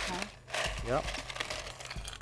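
Ice being scooped and tipped into a stemmed glass: light clicks and rattling, mostly in the second half, under brief talk.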